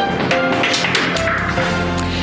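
Short musical news jingle of a radio bulletin: several held notes with sharp, percussive attacks, played between the headlines and the start of the news.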